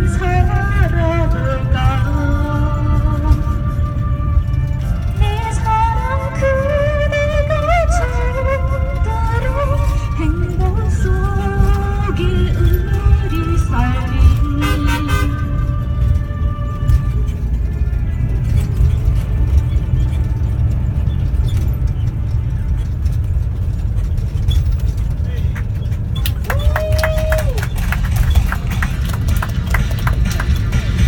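A woman singing a Korean song, her voice clearest in the first half, over the steady low rumble of a moving vehicle. Near the end there is one short held tone that dips at its close.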